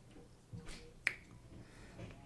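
A single sharp mouth click about a second in, after a couple of soft mouth sounds, in a quiet room.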